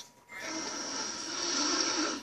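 A long noisy sniff through the nose, starting about half a second in and growing a little louder, heard from a TV speaker.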